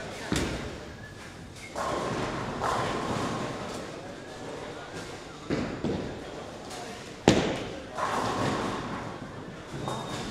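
Ten-pin bowling alley in play: sharp thuds of bowling balls landing on the lanes, the loudest about seven seconds in, and clattering crashes of pins lasting a second or two, starting about two seconds in and again near eight seconds.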